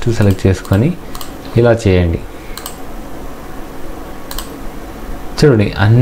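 A few isolated sharp clicks from operating a computer, scattered through a pause between short bits of speech.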